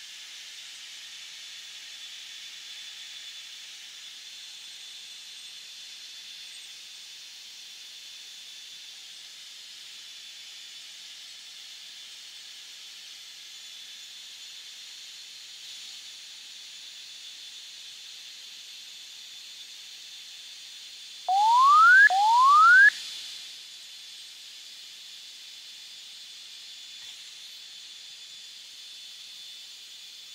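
Steady hiss of a fighter jet's cockpit intercom, with a faint high tone held throughout. About two-thirds of the way through, two short electronic tones each sweep quickly upward in pitch, one straight after the other.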